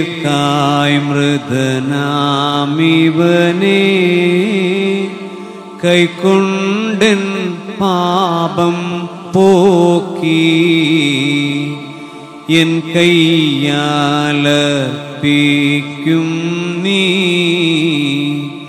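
Sung liturgical chant of the Holy Qurbana: a voice singing in long melodic phrases over steady held accompanying tones, with short breaks between phrases.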